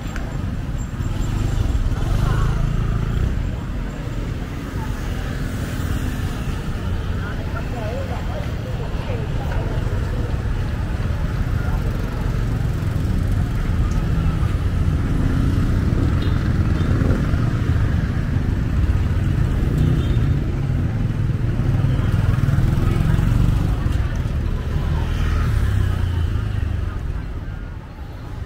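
Motorbike and car traffic passing on a city street, with a steady low rumble and people's voices mixed in.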